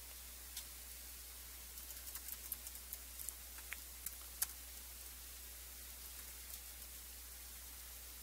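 Faint, scattered clicks of typing on a laptop keyboard, bunched together in the middle with one sharper keystroke, over a steady low hum.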